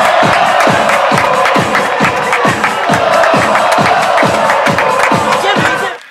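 Electronic dance music with a steady, fast kick-drum beat of about two thumps a second, with crowd cheering mixed in. It cuts off abruptly at the end.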